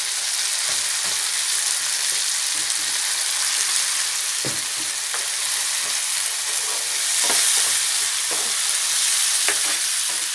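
Chopped onion and tomato sizzling steadily in oil in a nonstick pan, with a spoon stirring and scraping the pan a few times in the second half.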